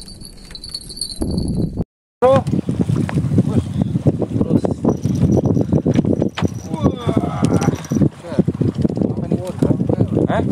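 People's voices talking and calling out loudly, starting right after a brief total silence about two seconds in.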